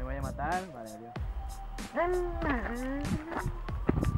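Background music: a song with a sung vocal line that swoops up and down, held notes, and regular percussion.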